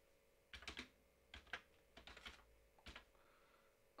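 Faint keystrokes on a computer keyboard in a few short clusters as a word is typed.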